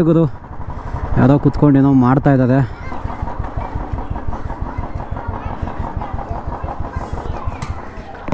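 Motorcycle engine running at low speed during a slow ride, with a steady, evenly pulsing low note. A man's voice is heard briefly near the start.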